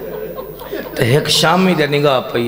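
A man's voice reciting into a microphone over a loudspeaker system. In the second half it rises into a long, held, half-sung note.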